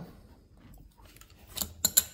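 Small metal hardware clicking: three short, sharp clicks near the end, as the 10 mm bolt from the bottom of the rear wheel arch is handled.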